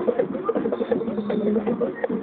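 A band playing, with drums and percussion keeping a busy beat.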